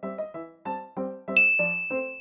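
Background music of quick, evenly spaced keyboard notes, about four a second. About halfway through, a bright bell-like ding sounds and rings on.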